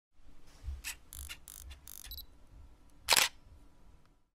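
Camera sound effect: a run of short mechanical whirs and clicks, a brief high beep just after two seconds, then one loud shutter click about three seconds in.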